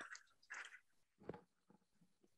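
Near silence: room tone broken by three faint, short noises.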